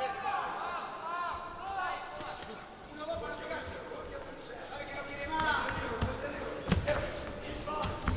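Boxing arena sound: crowd voices and calls through the hall, with scattered sharp thuds of punches and footwork on the ring canvas, a few louder ones near the end.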